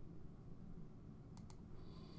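Low room hiss with two quick, faint clicks about a second and a half in.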